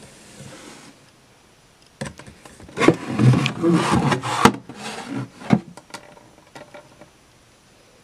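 A clear acrylic drawer divider lifted out of a wooden drawer, scraping and knocking against the drawer, with several sharp knocks over about four seconds from two seconds in.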